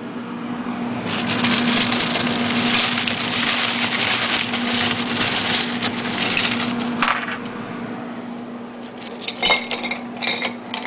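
A clear plastic bag of ice crinkles and rustles as it is handled, from about a second in to about seven seconds. Near the end, ice cubes clink as they drop into a glass tumbler. A steady low hum runs underneath.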